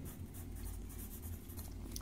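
Pencil scratching on paper as a word is written by hand, faint.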